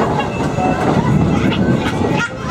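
A carousel running: a steady mechanical rumble and clatter from the turning ride.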